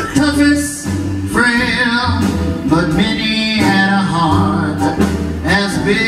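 A male singer with a jazz big band, horns and steady bass notes behind his voice.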